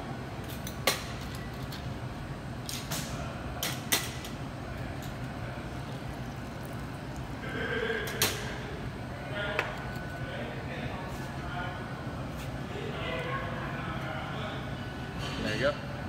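A handful of sharp clinks of glass and metal bar tools while a cocktail is handled and strained into a martini glass, over a steady low hum and quiet voices.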